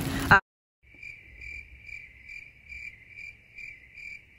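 Cricket chirping in an even, steady pulse of about three chirps a second, starting about a second in.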